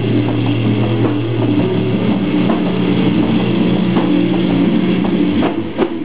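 Live doom metal band playing: heavily distorted bass and guitar holding slow, low chords over drums and cymbals. The low held note changes about a second and a half in, and there is a short break with a hit near the end.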